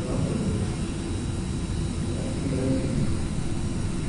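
Steady low rumble of room noise in a conference hall, with no sudden sounds.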